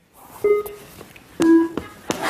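Two short electronic beeps about a second apart, the second a little lower: a game-show sound effect marking the genre being revealed.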